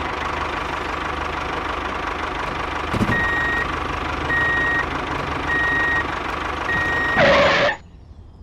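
Vehicle engine running steadily, with a reversing alarm beeping four times, about once a second, starting about three seconds in. Near the end comes a short loud burst of noise, and the engine sound cuts off abruptly.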